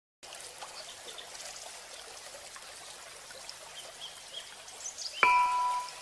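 Faint trickling water with a few short, high bird chirps. About five seconds in, a loud, bright mallet-percussion note like a glockenspiel is struck and rings on, opening the intro music.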